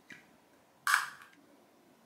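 A small glass jar's lid being twisted open: one short, sharp click about a second in.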